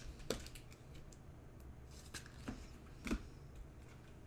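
Trading cards being handled and slid through the fingers, giving faint rustles and a few soft clicks; the loudest click comes about three seconds in.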